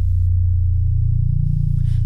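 A loud, low, steady drone in the band's music, held on one unchanging pitch.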